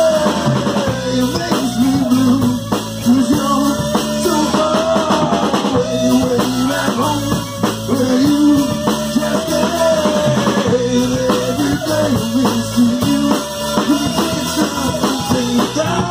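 A live rock band playing a song: guitar over a drum kit, with a steady beat throughout.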